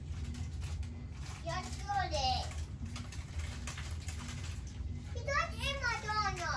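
A child's voice speaking in two short bursts, about a second and a half in and again near the end, over a steady low hum.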